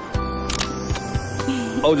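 A camera shutter clicks once, about half a second in, as a photo is taken, over background music. A voice begins near the end.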